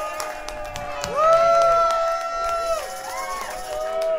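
Concert audience cheering and clapping after a song, with one long drawn-out shout from a single voice about a second in, then a shorter call.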